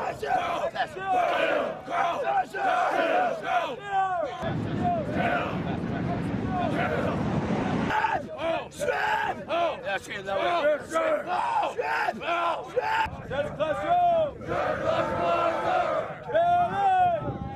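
Marine recruits shouting battle cries together with drill instructors yelling over them, many loud voices overlapping throughout. From about four to eight seconds in the shouts merge into one steadier roar of many voices.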